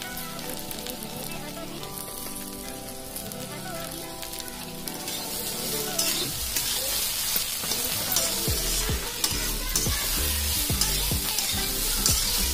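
Shredded bamboo shoot and okra sizzling in oil in a metal kadai. From about halfway a spatula stirs and tosses them, scraping and knocking against the pan in quick repeated strokes, and the sound grows louder.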